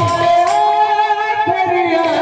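Kirtan music: a singer holds one long note with a slight waver, over a few strokes of a barrel hand drum.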